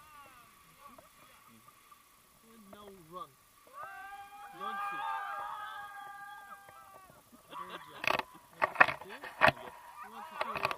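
Drawn-out calls from people's voices, several steady tones overlapping for a few seconds. Then, from about halfway through, a rapid run of knocks and thumps on the helmet camera as the tandem paraglider begins its launch run.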